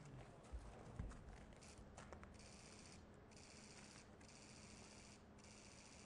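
Near silence: faint background sound with a few soft knocks in the first second or so, then four bursts of faint, rapid high-pitched clicking, each lasting under a second.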